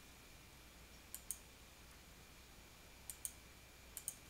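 Three faint computer mouse clicks, each a quick double tick of button press and release: about a second in, about three seconds in, and at the very end, over near-silent room tone.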